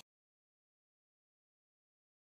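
Silence: the sound track is completely empty.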